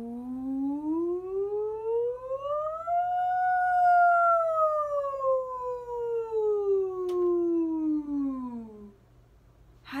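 A woman singing one long sustained 'ooh' as a vocal warm-up glide, sliding smoothly up from low to high and back down to low again, stopping about nine seconds in.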